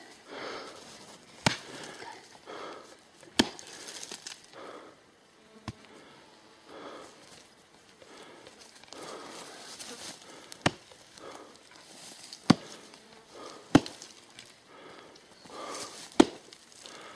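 Axe chopping at poplar roots in the ground: about six sharp, separate strikes at uneven intervals, two of them louder than the rest.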